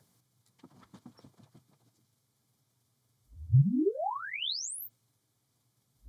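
Room EQ Wizard's sine-sweep test signal played through a loudspeaker: about three seconds in, one pure tone glides smoothly upward from deep bass to a very high whistle in about a second and a half, then cuts off. A few faint ticks come earlier.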